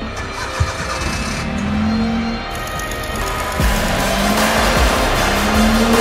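Maruti 800 hatchback's small three-cylinder engine revving up three times, each a rising note, as the car pulls away, with background music running underneath.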